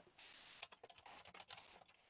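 Near silence, with faint, irregular clicks of typing on a computer keyboard.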